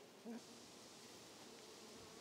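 Faint, steady buzzing of honeybees swarming over an open hive.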